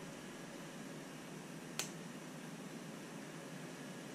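Faint steady room hiss with a single small click just before the two-second mark, from hands handling a small axle part.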